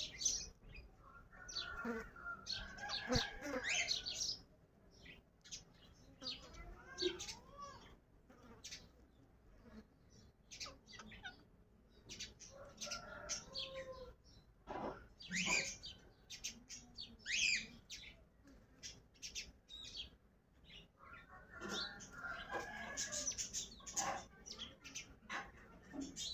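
Caged pair of rose-ringed parakeets giving short, sharp chirps and squawks on and off, with stretches of softer, wavering chatter near the start and near the end.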